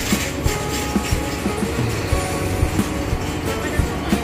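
Music with a steady beat, about two beats a second.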